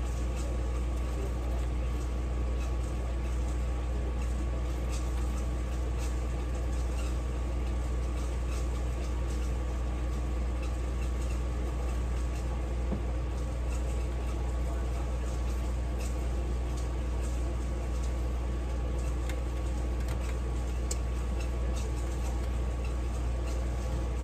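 A steady low hum with a thin whine from a running kitchen appliance, under faint scattered clicks and rustles of fingers spreading brown sugar over cut acorn squash halves on a metal baking tray.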